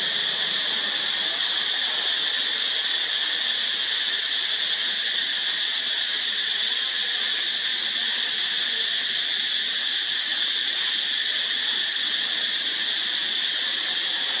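Insects droning in the surrounding woods: a steady, unbroken, high-pitched chorus.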